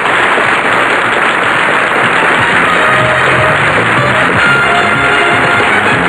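Studio audience applauding, with music coming in about halfway through.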